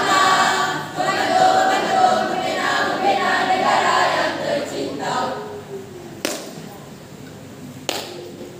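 A group of voices singing together, fading away about five seconds in, then a quieter stretch broken by two sharp clicks.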